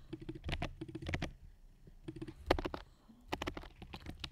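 Typing on a computer keyboard: quick runs of keystrokes with short pauses between them, as a line of code is edited.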